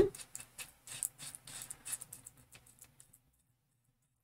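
A foam pouncer dabbing etching cream through a plastic stencil onto a glass dish: a quick, irregular run of light taps that stops about three seconds in.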